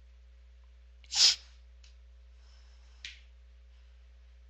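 A person sneezing once, sharply, about a second in, then a shorter, sharp sound about three seconds in, over a faint steady hum.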